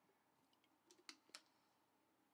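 Near silence, with a few faint, sharp clicks about a second in from a plastic water bottle being handled as it is drunk from and lowered.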